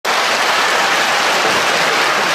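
Theatre audience applauding, a dense steady clapping.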